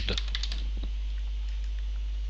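Typing on a computer keyboard: a quick run of light keystrokes in the first second, then a few scattered clicks, over a steady low hum.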